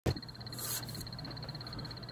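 A click, then a low electrical hum with faint hiss and a thin high whine that pulses quickly, steady throughout.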